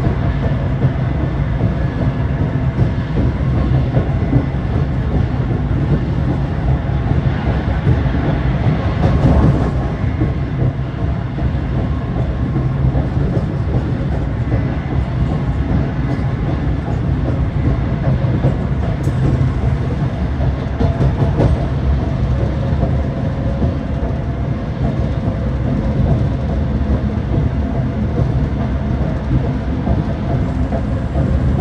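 Afrosiyob high-speed train, a Spanish-built Talgo, running at speed, heard from inside the passenger car: a steady low rumble of wheels on rail, swelling slightly about nine seconds in.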